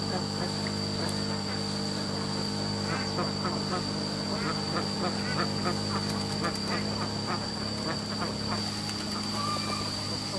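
A flock of domestic ducks quacking, with a quick run of short quacks through the middle, over a steady background hum.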